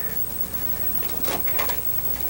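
Steady low electrical hum with a faint high whine from a switched-on amplifier and home audio rig, and a couple of faint clicks from its buttons being pressed, about a second and a half in.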